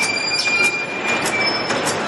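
Plastic bag sealing and cutting machine running, with a steady high-pitched squeal over rapid, regular clicking.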